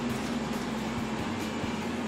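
Steady mechanical hum with a faint steady tone underneath, and a few faint knocks.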